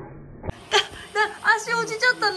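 Siberian husky vocalizing: a run of short pitched calls that rise and fall in pitch, starting about half a second in.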